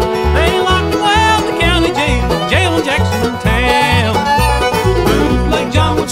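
Bluegrass band playing an instrumental break: banjo and a lead instrument bending its notes over a bass keeping a steady beat.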